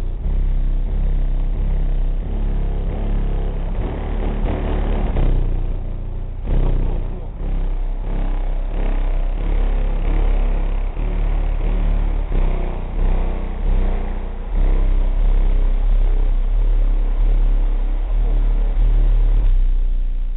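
Hip-hop track played very loud through a high-powered car-audio subwoofer system, heard from outside the car, with heavy deep bass dominating the sound throughout.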